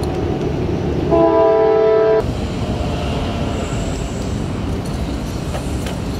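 A steady low rumble with a loud horn blast, a chord of several steady tones, sounding for about a second starting about a second in.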